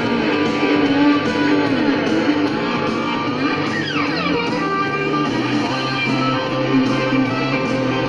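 Band playing an instrumental break led by electric guitar, with a quick falling slide about halfway through.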